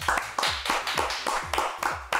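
Hands clapping in a quick, even run, about six claps a second.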